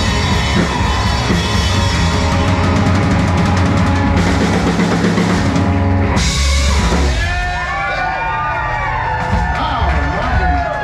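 Live country band with fiddle, electric guitar, bass guitar and drum kit playing the loud closing bars of a song, ending on a final crash about six seconds in. Whooping voices follow as the music stops.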